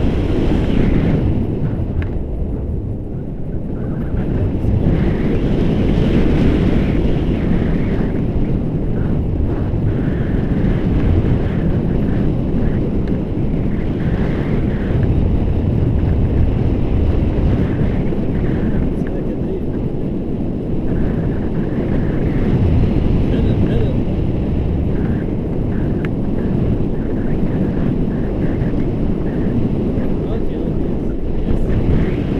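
Loud, steady wind rushing and buffeting over the camera microphone from the airflow of a tandem paraglider in flight.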